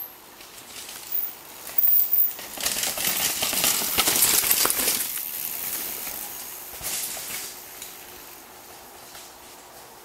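A downhill mountain bike passing on a dirt forest trail: tyre noise over dirt with light metallic rattling and clicking from the bike. It grows loudest about three to five seconds in, then fades as the rider moves away.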